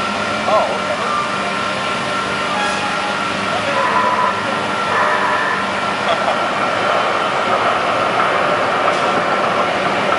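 A parade float's motorised chassis driving slowly past, its engine droning steadily with a steady high tone over it. Indistinct voices come and go.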